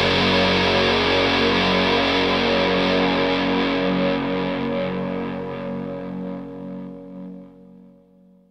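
The closing chord of a rock song, played on distorted electric guitar through effects, rings out with a slight regular waver. It holds for a few seconds, then slowly dies away to almost nothing near the end.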